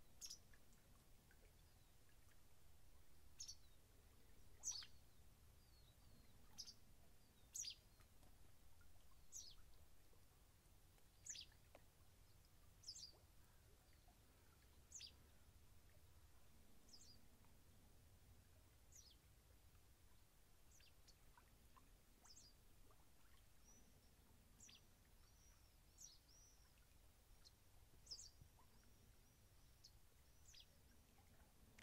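Faint bird calls in near silence: short, high, downward-sweeping chirps repeating about every two seconds, with some brief twittering near the end.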